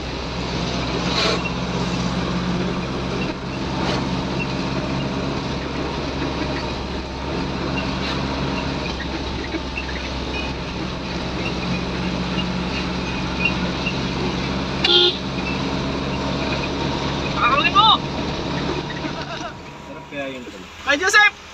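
Steady engine drone and road noise of a moving vehicle heard from inside the cab, with a few brief higher-pitched sounds near the end.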